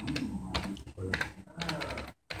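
Computer keyboard keys typed in a quick run of several keystrokes.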